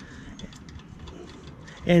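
Faint small ticks and handling noise as a bolt is threaded by hand into a new aluminium fuel petcock on a scooter, over a low steady background.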